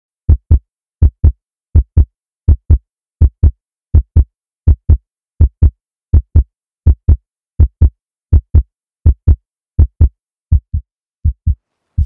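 Heartbeat sound effect: steady paired lub-dub thumps, about 80 beats a minute, growing softer over the last couple of seconds.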